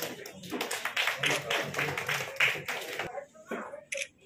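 Applause from a small audience in a hall, dying away about three seconds in, followed by a couple of sharp clicks near the end.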